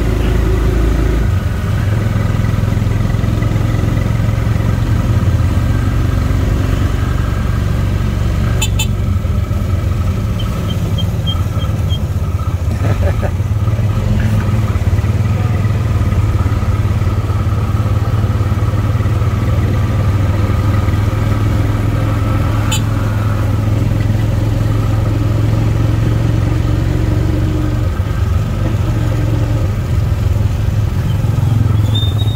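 Tuk tuk (three-wheeled auto rickshaw) engine running steadily while driving, with two sharp clicks, one about nine seconds in and one about twenty-three seconds in.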